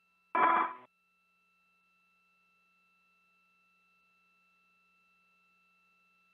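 Air-to-ground radio loop: a brief half-second radio voice fragment near the start, then near silence with only a faint, steady electronic tone on the open channel.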